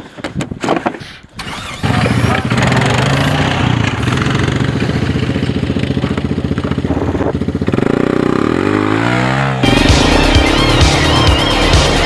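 Knocks and bumps as riders mount, then an ATV engine starts about two seconds in and runs with a steady pulsing note. Its pitch sweeps near the end, and electronic music with a wobbling synth cuts in.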